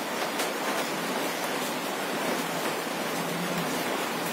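Steady, even hiss of background noise with no distinct event.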